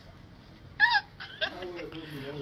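A person's short, high-pitched vocal squeak about a second in, with quiet voices talking after it.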